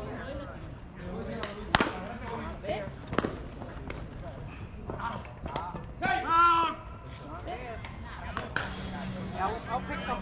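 Softball players' voices calling across the field, with two sharp knocks in the first few seconds and one loud, drawn-out shout about six seconds in.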